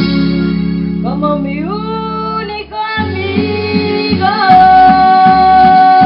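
A woman singing a ballad into a microphone over amplified backing music with guitar. Her voice glides upward about a second in and holds one long note from about four and a half seconds, the loudest part.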